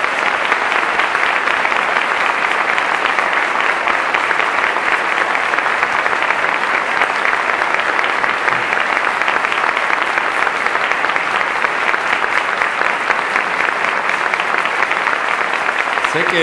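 Sustained applause from a large seated audience: many hands clapping in a dense, steady patter that swells up at the start and holds.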